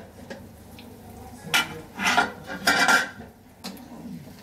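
An aluminium lid clinks as it is lifted off a karahi, then a wooden spatula scrapes and turns braising goat meat in the pan in a few strokes during the second half.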